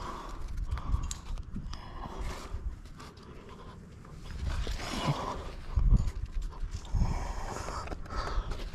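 A rock climber panting as he climbs, with a heavy breath every couple of seconds, mixed with light scuffs and rubs of hands on sandstone.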